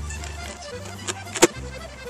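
Background music with a steady bass line that shifts note about every half to three-quarters of a second. There is one sharp click about one and a half seconds in.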